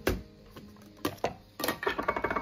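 Plastic clicks and knocks from an electric mini food chopper being taken apart: the motor head is lifted off and set down and the lid is pulled from the bowl. There are two sharp clicks at the start and a few more about a second in and towards the end.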